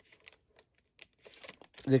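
Faint crinkling and light ticks of a thin clear plastic parts bag being handled, the sealed bag holding a model kit's clear canopy parts. A man's voice starts near the end.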